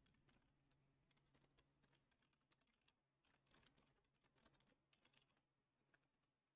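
Very faint typing on a computer keyboard: scattered keystrokes at irregular intervals.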